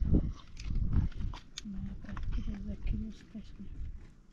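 Sharp clicks of a knife cutting through potatoes held in the hand over a metal plate, with a low rumble in the first second or so. Through the middle comes a low, wavering, voice-like call.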